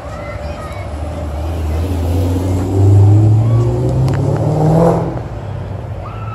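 A motor vehicle accelerating on the street, its low engine note rising in pitch over a few seconds, loudest about halfway through, then fading near the end.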